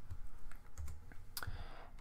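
Typing on a computer keyboard: a handful of separate keystrokes.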